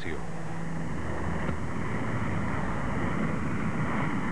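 Aircraft in flight: a steady, rushing rumble of engine and airflow with no breaks.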